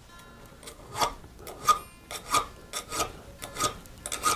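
A safe-edge file being stroked across the inside of an auger bit's nicker, steel on steel, to sharpen the spur's cutting tip. It makes a series of short rasping strokes, about seven, coming quicker toward the end.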